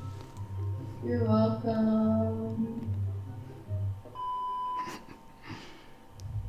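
Soft acoustic guitar music under a few brief spoken thank-yous, with one steady electronic beep lasting under a second about four seconds in.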